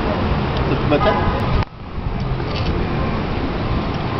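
Steady low outdoor rumble, with a brief voice about a second in; the sound drops out suddenly for a moment at about one and a half seconds.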